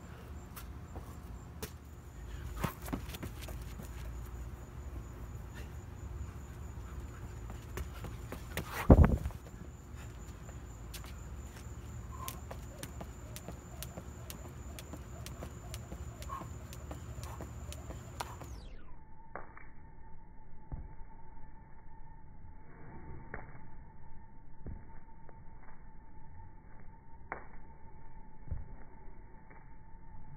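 Bodyweight workout on a concrete patio: hands and sneakers slapping down during burpees, with scattered clicks and one loud thump about nine seconds in. After a cut, a jump rope swishes through the air and ticks against the concrete.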